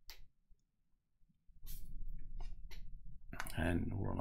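A few short, sharp computer mouse clicks, separated by a near-silent pause, then a man's voice starts near the end.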